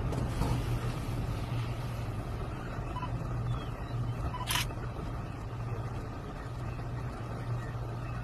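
A vehicle engine idling with a steady low hum, and one sharp click about four and a half seconds in.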